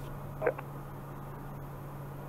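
Steady low drone of the Pilatus PC-12NG's turboprop engine and propeller in cruise climb, heard from the cockpit under a faint hiss. The sound is even throughout, with one short spoken word about half a second in.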